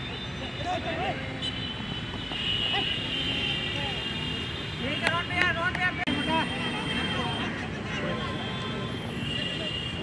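Players and spectators at an outdoor football match shouting and calling out, with a louder cluster of shouts about five seconds in. The sound breaks off abruptly about six seconds in, at a cut.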